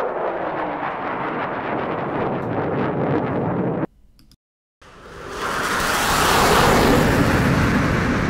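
Jet aircraft roar sound effect: a steady rushing roar that cuts off just under four seconds in, then after a brief silence a second roar swells up, peaks and starts to die away like a jet passing by.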